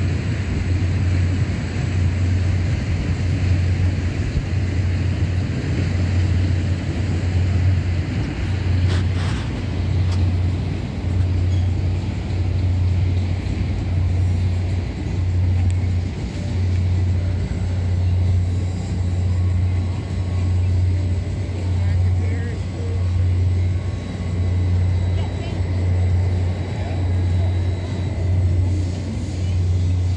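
Low machine hum from a running carnival swing ride, swelling and fading in a slow, even rhythm, with faint voices around it.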